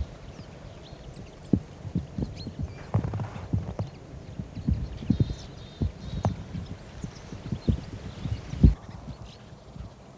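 A large flock of bramblings in flight, short high chirps scattered throughout. Under them runs a string of irregular dull thumps, the loudest near the end.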